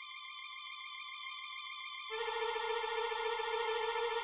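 Harmonicas playing long held notes: a high note at first, then a lower note joins about two seconds in, making a fuller, louder chord.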